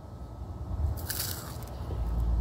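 A crisp rolled wafer stick coated in chocolate being bitten into, with a short crackly crunch about a second in.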